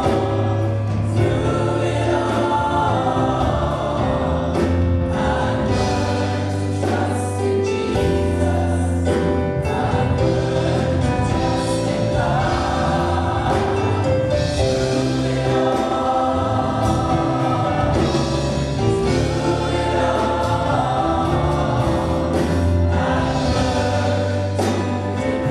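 A group of six women singing a gospel song in harmony, with held low bass notes underneath that change every second or two.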